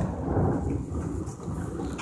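Hailstorm: hail pelting the surroundings over a deep, steady rumble, which is loudest in the first half second.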